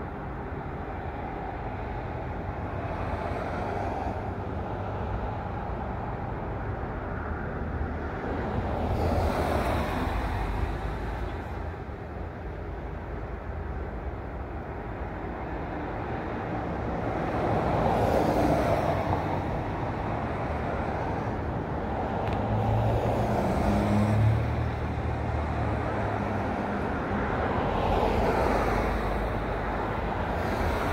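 Road traffic: vehicles passing one after another, each swelling up and fading away, about five times, over a steady background hum. One low engine note stands out near the two-thirds mark.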